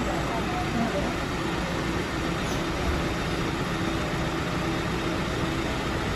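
Steady ambient rumble of road vehicles at a station bus stop, continuous and even, with faint indistinct voices in the background.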